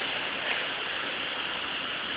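Steady, even rushing hiss of background noise with no distinct events in it.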